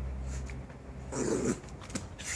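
West Highland white terrier puppy gives one short growl about a second in while tugging and playing with a rope toy.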